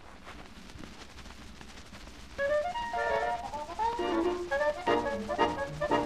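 A 78 rpm record playing: about two seconds of surface hiss and crackle, then the band strikes up. A voice shouts "hep" near the end.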